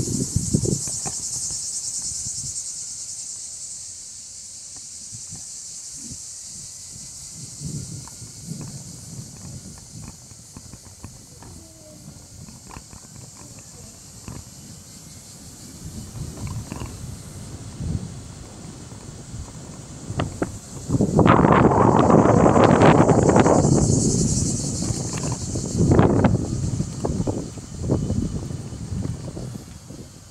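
Footsteps of someone walking on pavement, under a steady high buzz of cicadas. About two-thirds of the way through, a louder rush of mixed noise lasts a few seconds.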